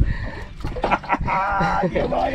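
A man's voice: a short, high, wavering vocal sound in the second half, laugh-like. A few sharp clicks come just before it, over a low rumble of wind and sea.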